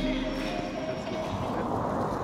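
Indistinct background voices with general room noise, nothing clearly spoken.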